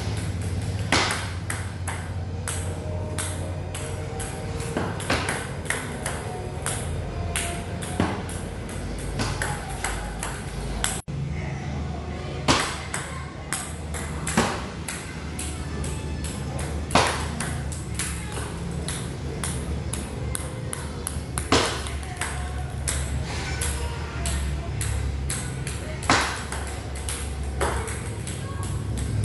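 Table tennis serve practice: a dense run of light plastic clicks from balls striking the paddle and bouncing on the table. A sharper, louder hit comes every few seconds, over a low steady hum.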